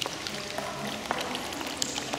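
Small floor fountains in a marble basin splashing and trickling, with soft music in the background.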